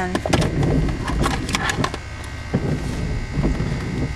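A pen scratching on paper while a note is written, with paper rustling: a quick run of short scratchy strokes in the first two seconds, then a few more, over a low steady rumble.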